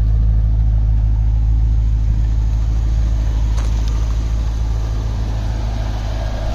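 Stock 2002 Chevrolet Corvette C5's 5.7-litre LS1 V8 idling steadily through its factory exhaust, a low, even rumble.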